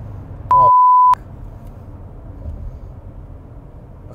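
A steady censor bleep about half a second in, masking a swear word for just over half a second. Around it, the low steady road rumble of a Lexus LS 400 on the move, heard from inside the cabin.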